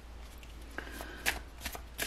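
Tarot cards being handled: a handful of soft flicks and rustles in the second half, over a faint steady hum.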